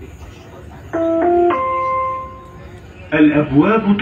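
Dubai Metro's three-note electronic chime about a second in, the notes stepping upward with the last one held and fading. It signals that the train doors are about to close. Near the end a recorded announcement voice begins over the steady hum of the carriage.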